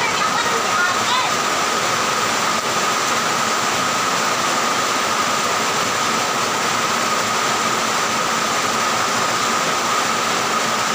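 A steady, even hiss with a thin, high, steady tone running through it, at a constant level. Faint voices come through in the first second.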